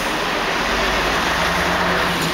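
Highway coach's diesel engine running low as the bus pulls past close by at slow speed, with tyre and road noise; the engine rumble grows about half a second in.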